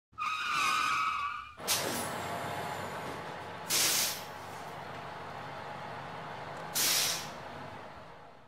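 Tour bus sound effect: a high, wavering brake squeal for about a second and a half, then a large bus engine idling with three sharp air-brake hisses. The idle fades out near the end.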